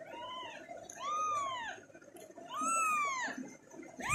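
A young kitten mewing three times, each mew rising and then falling in pitch. The first mew is fainter, and the next two come about a second and a half apart.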